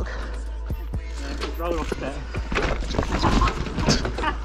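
2021 Propain Spindrift mountain bike rattling and knocking over rocks and roots on a steep dirt descent, many short sharp knocks over the rush of tyres on the trail.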